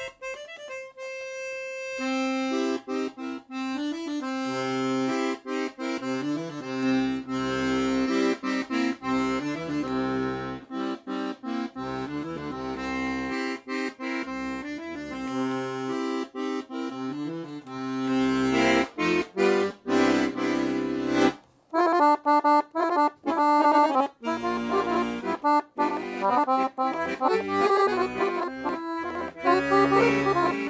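Pancordion Baton 120-bass piano accordion playing: first a single held note, then held bass notes and chords from the bass buttons. After a short break about 21 seconds in, a faster, louder tune follows, with a treble melody over bass and chord accompaniment.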